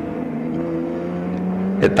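Race car engines running hard as the cars come up a straight toward the camera, a steady drone whose pitch rises slowly.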